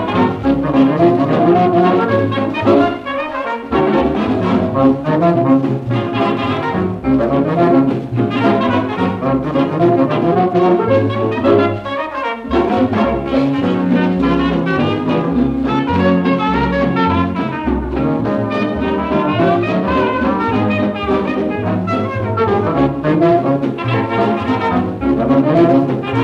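Interwar dance orchestra playing an instrumental passage of a foxtrot, led by brass, on a 1939 Odeon 78 rpm record. The sound is dull, with little treble.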